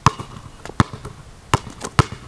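Basketball bouncing on brick paving: four sharp bounces in two seconds, the last two closer together.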